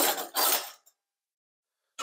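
Metal kitchen utensils clattering and scraping in an open drawer as one is picked out, for under a second, cutting off abruptly.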